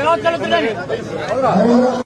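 Indistinct chatter of several men talking over one another in a crowd, with no one voice clear.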